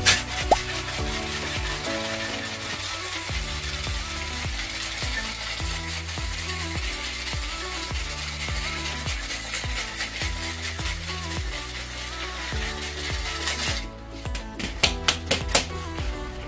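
Ice rattling hard inside a metal tin-on-tin cocktail shaker being shaken for about fourteen seconds, over background music. Near the end the shaking stops and a few sharp metallic knocks follow, the tins being struck to break their seal.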